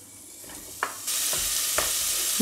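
Diced onion dropping into hot clarified butter in a stainless steel pot: a loud, even sizzle starts about a second in as the onion starts frying. A few knocks come from the wooden spatula and bowl as the onion is scraped in.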